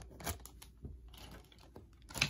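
Faint crinkling and a few light clicks as bagged plastic model kit parts trees are handled.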